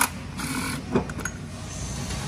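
Engine hoist lifting a 2.4 four-cylinder engine out on its chain: two metal clanks about a second apart over a steady low background sound.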